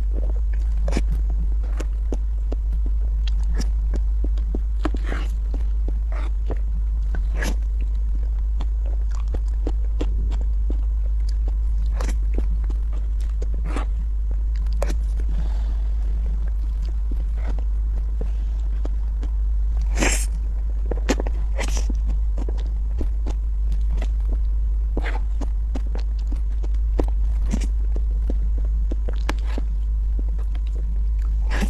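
Eating a soft cream cake with a spoon: scattered wet mouth clicks, chewing and spoon scrapes, over a constant low hum.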